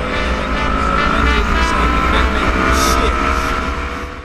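Yamaha R25 parallel-twin engine pulling under acceleration, its pitch rising steadily, with heavy wind rumble on the camera microphone.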